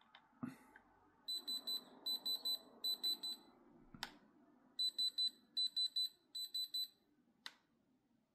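Handheld Diamond Selector II gem tester beeping in quick high-pitched triplets, six groups of three in two runs, as its probe touches the stone: the signal that it reads as diamond. A few sharp clicks fall between the runs, about half a second in, at four seconds and near the end.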